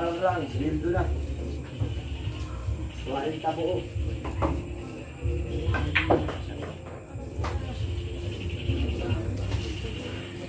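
Pool cue striking the cue ball with one sharp click about six seconds in, with a few fainter ball clicks around it, over the chatter of onlookers.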